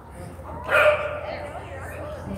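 A dog barking once, loudly, a little under a second in.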